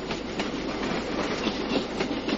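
Train running on the rails: a steady noisy rumble with faint clicks through it.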